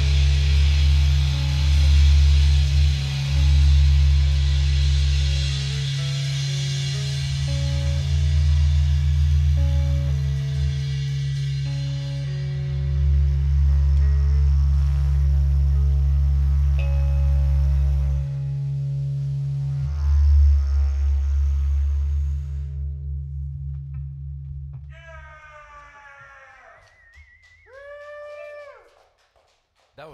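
Live rock band with a didgeridoo played into a microphone, giving a loud, steady low drone under electric guitar and bass notes. The music rings out and fades about 23 seconds in, and a brief voice sounds near the end.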